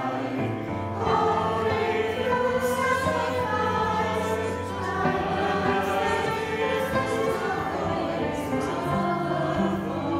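Small mixed choir of women's and men's voices singing a slow church introit in long-held notes.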